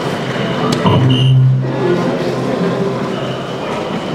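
Busy soft-tip darts hall: electronic dartboards' sound effects over a constant murmur of crowd and machines. About a second in, a short electronic tone sounds, alongside a dart's hit on the board registering a double 18.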